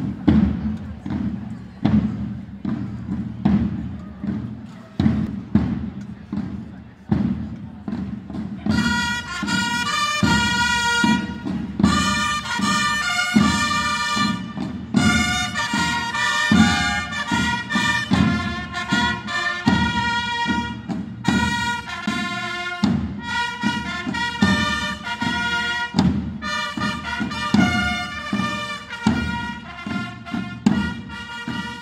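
A band playing outdoors: drums beat a steady march rhythm, and about nine seconds in a brass melody joins them over the drums.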